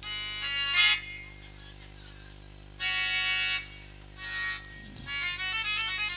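Harmonium playing held reedy chords in short phrases with gaps between them, then a quicker run of notes near the end.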